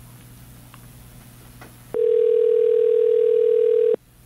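Faint low hum for about two seconds, then a loud, steady single-pitched electronic tone of the dial-tone kind, held for about two seconds and cutting off sharply.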